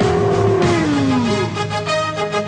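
A cartoon larva's wordless cry sliding steadily down in pitch. About halfway through, soundtrack music with held notes takes over.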